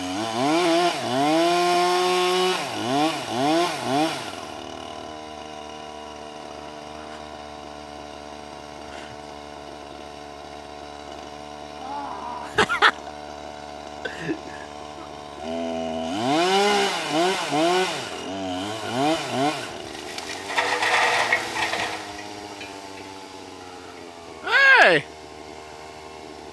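Chainsaw running at the top of a tree, revving up and down in repeated bursts as it cuts, dropping to a steady idle for about ten seconds, then revving in bursts again. A single sharp knock comes about halfway through.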